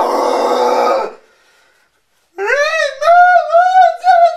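A man's harsh, raspy metalcore-style scream, unaccompanied, lasting about a second and cutting off. After a short pause his voice comes back high and wavering, in a mock sung wail.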